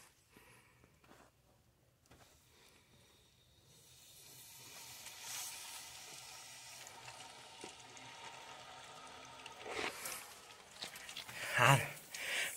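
Water running out of a newly fitted garden tap into a hose, a faint steady hiss that starts about four seconds in, with a brief louder rush near the end. Water is leaking a little at the hose connection on the spout.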